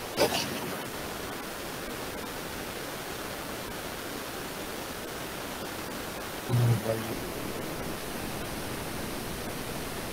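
Steady background hiss of the recording, with a short sharp sound right at the start and a man's brief voiced sound, like a short "uh", a little past halfway.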